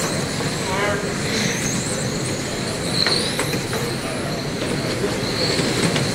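High-pitched whine of several 1/10-scale electric RC touring cars with 10.5-turn brushless motors running together on a carpet track, the whines gliding up in pitch as the cars accelerate, over a steady rush of tyres and drivetrains.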